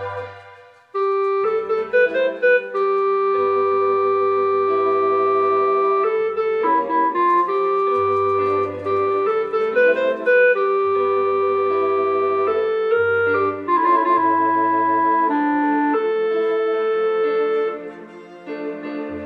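A home electronic organ being played: long sustained chords under a slow-moving melody, with low bass pedal notes coming in and out. The playing breaks off briefly about a second in, then resumes.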